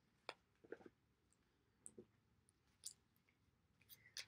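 Near silence broken by a handful of faint, short clicks of an oracle card deck being shuffled in the hands.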